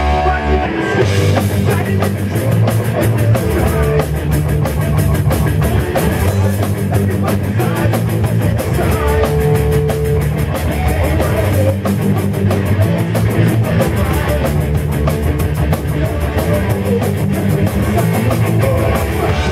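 A punk rock band playing live, with a fast, steady drum-kit beat under electric guitars.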